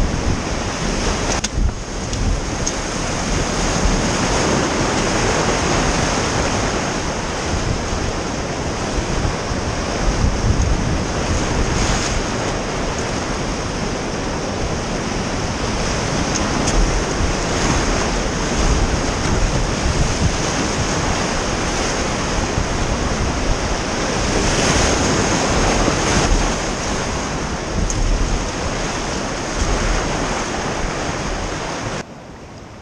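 Whitewater rapids rushing and churning around an inflatable raft, a loud, steady wash of river noise with a few brief surges.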